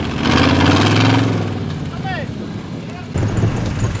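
Off-road 4x4 engine running under load, loudest in the first second and a half and then dropping back, as a stuck Land Rover Defender is pulled out of deep water on a tow strap.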